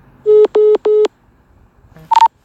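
Three short, identical buzzy beeps in quick succession from the Zello push-to-talk app on a phone, set off by a click of the phone's volume-down button acting as a shortcut to a channel: the app's tone answering the button press.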